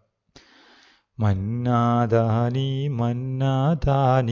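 A man's voice singing an Arabic children's poem in long, drawn-out notes at a steady pitch. It comes in a little over a second in, after a brief faint hiss.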